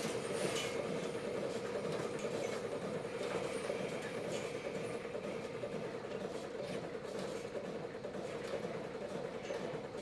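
Milking machine running in a milking parlour, a steady hum and hiss as the teat cups are put onto a cow's teats.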